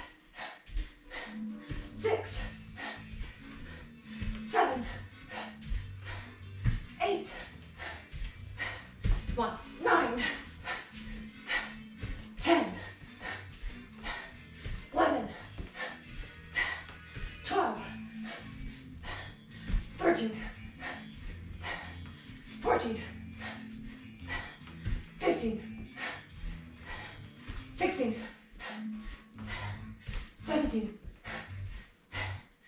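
A woman's short, sharp vocal exhales with each strike, each sliding down in pitch. They come about every two and a half seconds, in time with each double-backfist and hook-kick repetition.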